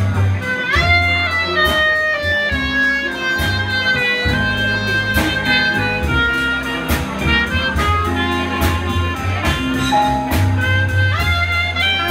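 Traditional jazz band playing live, with a clarinet carrying the melody over upright bass, drums and keyboard.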